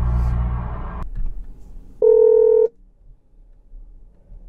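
Engine and road drone inside the VW Golf R's cabin, cut off suddenly about a second in. About two seconds in comes a single steady electronic tone lasting under a second, a phone's call tone.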